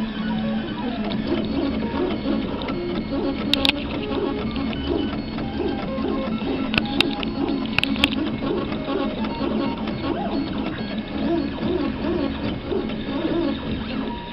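3D printer's stepper motors whining as the print head moves, the pitch rising and falling with each short move, with a few sharp clicks.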